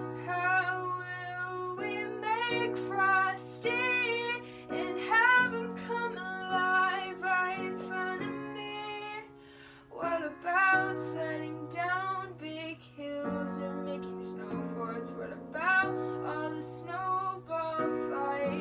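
A woman singing an original ballad, her voice wavering with vibrato over held chords on a digital piano. The singing and playing drop away briefly about halfway through, then resume.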